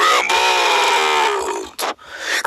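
A raspy, quacking Donald Duck–style voice impression, held in one long, slowly falling utterance. It breaks off into a short sharp crack just before the end.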